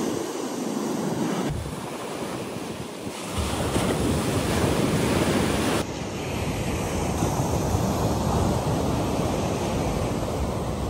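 Surf breaking and washing up a sandy beach, a continuous rushing wash. Wind buffets the microphone with a low rumble from about three seconds in, and the sound changes abruptly twice.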